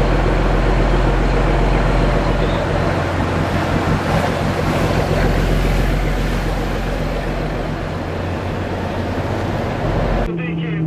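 A rigid-hull inflatable patrol boat running fast: a steady engine drone under the rush of water and wind noise, easing slightly toward the end.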